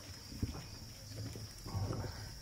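Crickets trilling steadily in a pause, with faint low sounds beneath.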